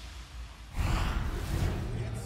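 A sudden rush of noise about three-quarters of a second in, swelling and then easing off, over the low beat of background music.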